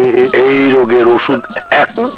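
A man crying out in a long strained yell held for about a second, followed by shorter broken cries.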